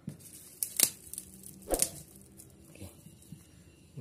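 A piece of thin plastic being torn and handled by hand, a few sharp crinkling snaps scattered through, over the faint steady hum of a running mini electric heat gun.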